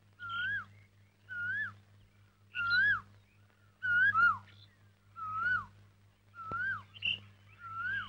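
A bird calling: a short whistled note that rises and then drops sharply, repeated seven times at about one every second and a quarter, loudest in the middle of the run. A faint low steady hum runs beneath.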